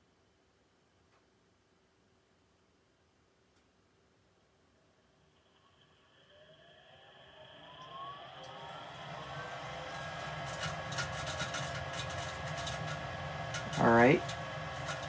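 Lennox SLP98UHV furnace's multi-speed draft inducer motor starting about five seconds in after near silence. Its whine rises in pitch and grows louder as it spins up, then settles to a steady run at about 70 percent speed: the pre-purge at the start of a call for heat.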